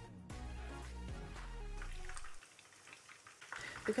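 Background music with a steady beat that stops a little over two seconds in, leaving the faint sizzle of battered chicken pieces frying in oil in a non-stick pan.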